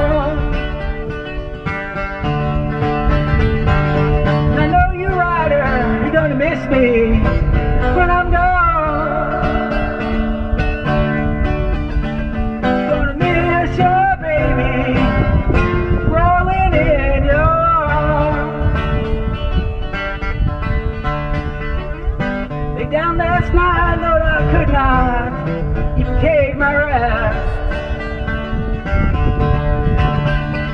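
Amplified acoustic guitar playing an instrumental break: held chords underneath with a melody on top that slides up and down in pitch.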